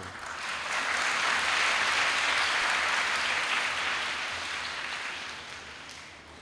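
A congregation applauding: the clapping builds within the first second, holds steady for a few seconds, then dies away toward the end.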